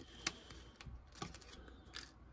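Faint clicks and taps of hard plastic as a toy trash can is handled against a toy garbage truck's lifter arm. There are four short sharp clicks, the loudest about a quarter second in.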